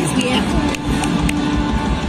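Concert music played loud through cinema speakers, with the audience applauding and voices calling out in the crowd.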